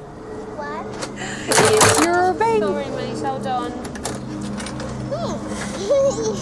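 Voices from a TV comedy scene, with short high-pitched exclamations, and a brief loud noise about a second and a half in.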